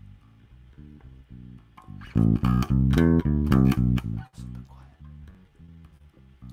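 Spector electric bass playing a dynamics exercise: a run of single plucked notes played very softly, then a bar played loudly starting about two seconds in, then soft again just after four seconds.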